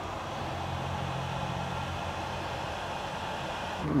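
Electric heat gun running steadily, its fan blowing with a low hum, heating a heat-shrink connector on a spliced wire; it cuts off just before the end.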